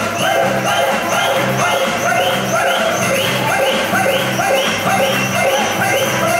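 Live band playing Bollywood music: a short melodic phrase repeats about twice a second over a steady beat and bass, with little singing.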